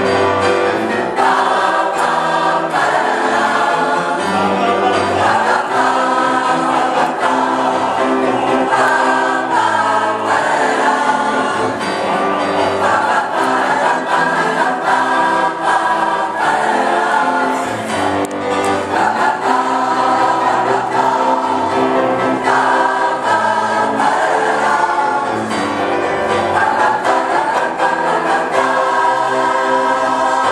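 Choir singing a lullaby, with sustained, steady voices throughout.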